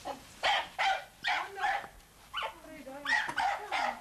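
A dog barking repeatedly, with about eight short barks at irregular intervals.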